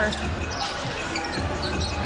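Basketball game sound on the court: a ball bouncing on the hardwood floor over steady arena crowd noise and music.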